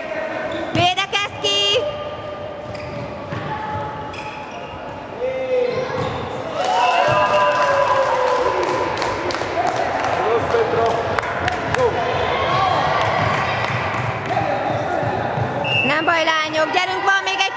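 A handball bouncing on a wooden sports-hall floor, with children's voices shouting through much of it and the whole echoing in the large hall.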